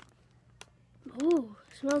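Near silence with one faint click, then a short hummed vocal sound with rising-then-falling pitch, and speech begins at the end.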